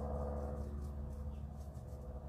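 A steady low electrical-type hum with a few faint steady tones above it, with faint light brushing sounds from a small paintbrush dabbing paint onto a moulding.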